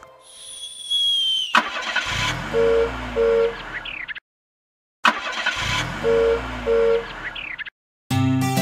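A cartoon car sound effect played twice: an engine revs up and back down with two short horn beeps, with about a second of silence between the two plays. Before it comes a short high whistling tone that falls slightly, then cuts off.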